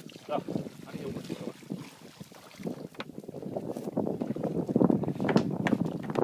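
Wind buffeting the microphone of a phone filming from an open boat, with water sounds around the drifting hull. It starts quiet and grows louder and gustier through the second half.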